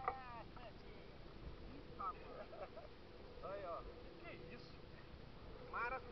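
Indistinct voices of people talking in short bursts, over a faint steady hum and low rumble.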